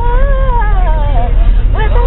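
A woman's voice singing gospel a cappella, holding one long note that bends and slides downward before trailing off, with more singing coming in near the end. The bus's steady low engine and road rumble runs underneath.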